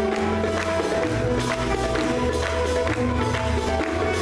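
Live Turkish classical music ensemble playing in makam Muhayyer Kürdi to the nim sofyan rhythm: plucked strings and sustained melodic notes over a steady beat of hand-drum strikes.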